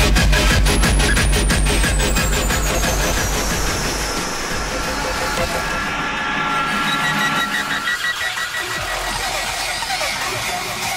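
Hardtekk DJ set music: a rapid pounding electronic beat with heavy bass and a high synth sweep falling in pitch. About four seconds in the bass and beat drop out into a breakdown of steady synth tones, and the low end returns near the end.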